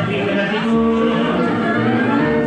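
Tango music playing over the hall's sound system: long held notes from the orchestra over a low bass line.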